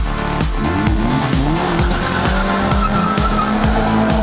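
Electronic dance music with a steady beat. Under it a car engine revs up, its pitch rising and dropping, then holds a steady note from about halfway through.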